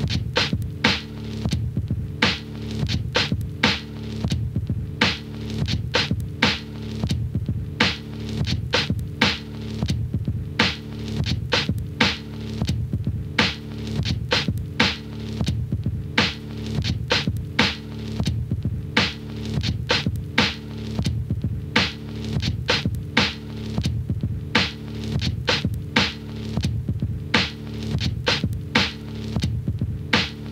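Funky drum loop with a bass line underneath: sharp drum hits repeating in an even rhythm over sustained low bass notes.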